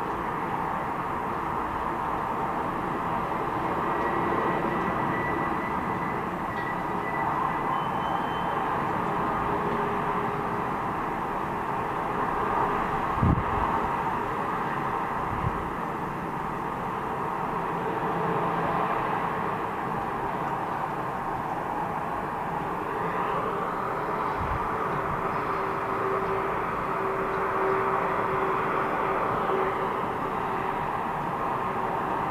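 Steady road traffic on a multi-lane highway, cars and trucks passing in a continuous rush that swells and fades as vehicles go by. There are a couple of short low thumps about halfway through.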